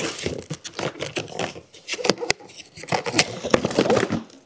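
Cardboard box of a Swiffer WetJet mopping kit being torn and pried open by hand: irregular tearing and crinkling with many sharp clicks.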